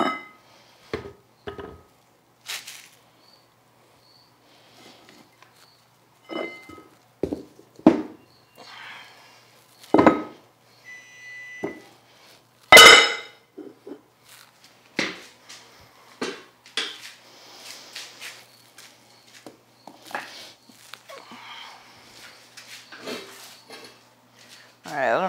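Weight plates being lifted, shifted and set down on a concrete floor and under a bench leg: a string of separate clanks and knocks, some with a short metallic ring, the loudest about 13 seconds in.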